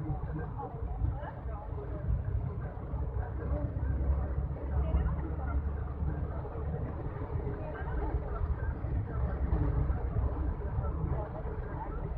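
Steady low rumble of a vehicle's engine and tyres heard from inside while driving, with people's voices talking over it.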